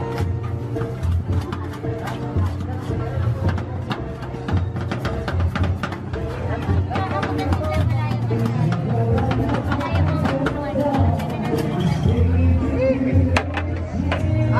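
Background music with a steady bass line and voices, over many irregular sharp taps of metal spatulas chopping ice cream on a steel cold plate.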